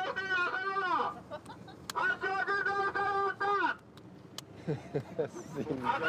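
A man's voice calling out in two long drawn-out shouts about a second apart, each held on one pitch and falling away at the end. Brief speech follows near the end.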